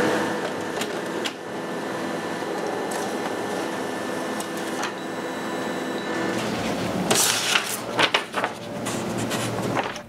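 Canon colour laser multifunction printer running a print job: a steady whirring hum with a few clicks, then louder clicks and noise for the last few seconds.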